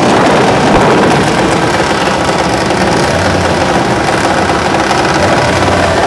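Cars' engines idling at a drag-strip starting line as the cars roll up to stage. The sound is loud and steady throughout.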